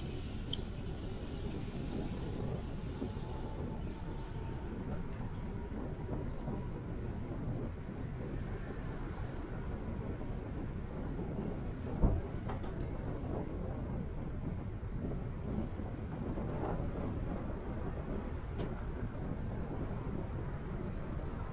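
Steady city street noise of traffic, mostly a low rumble. One sharp knock comes about twelve seconds in.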